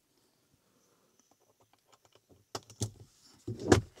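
Handling noise as the camera is moved inside the car: faint scattered clicks and rustles, then a few sharp knocks in the last second and a half, the loudest just before the end.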